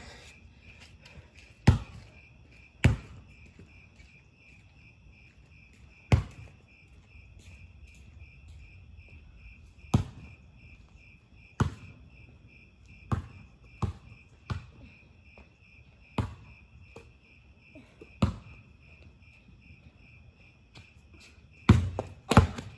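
Crickets chirping in a steady pulsing chorus, with a basketball thumping on the pavement about a dozen times at irregular intervals. The thumps are the loudest sounds.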